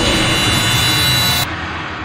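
A loud whooshing rush of hiss, a transition effect in the soundtrack, takes over from the background music. Its top end cuts off abruptly about one and a half seconds in and the rest fades away.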